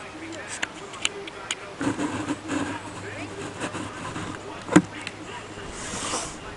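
A wiffleball game with one loud, sharp knock of the plastic ball striking something, about three-quarters of the way through, and a few lighter clicks early on.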